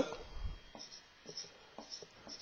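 Marker writing on a whiteboard: faint, scattered squeaks and light taps as strokes are drawn.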